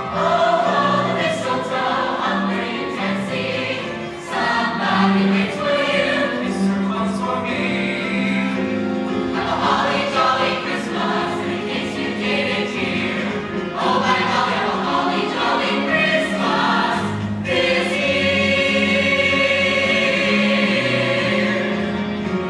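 A mixed choir of women's and men's voices singing a Christmas song in harmony, closing this passage on a long held chord.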